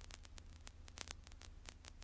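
Near silence: a faint steady electrical hum with scattered soft clicks of static.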